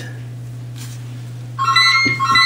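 Rotary 802 telephone's bell ringing in a double-ring cadence. After a pause, the first two short rings of the next double ring begin about one and a half seconds in, a low steady hum underneath. The ringing shows the rewired bell circuit now works on the two-wire line.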